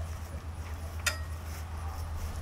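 A single sharp metallic clink about a second in, from the crew handling equipment at a small field cannon being readied for loading, over a steady low rumble.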